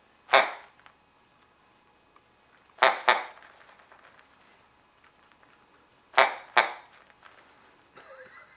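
Plush hedgehog toy squeezed by hand, giving out its built-in noise five times: once near the start, then a quick pair about three seconds in and another pair about six seconds in.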